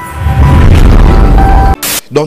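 Intro sound effect: a loud, deep boom rumble under a few held music notes, swelling about a third of a second in and cutting off suddenly near the end, followed by a brief burst of hiss.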